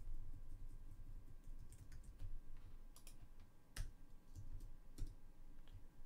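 Scattered keystrokes on a computer keyboard: a few isolated clicks with pauses between them, over a low steady hum.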